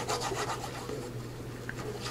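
A glue stick being rubbed back and forth over the back of a paper pocket: a quiet, steady rubbing of the stick on paper.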